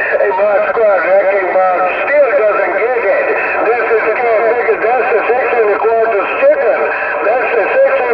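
Uniden Grant LT CB radio on channel 6 (27.025 MHz) playing incoming voice traffic through its speaker. The talk is narrow and tinny and too garbled to make out.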